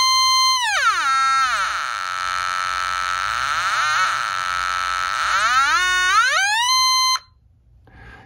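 Handheld LoBlast Bleepler variable-frequency tone generator sounding one electronic tone from its small speaker while its button is held. As the knob turns, the pitch steps down over the first couple of seconds and stays low for a few seconds. It then glides back up to where it started and cuts off suddenly about seven seconds in.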